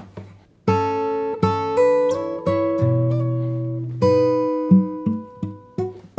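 Mayson MS7/S steel-string acoustic guitar, fingerpicked: after a short pause, a phrase of single notes and chord tones that ring into one another, with a low bass note sounding underneath about halfway through.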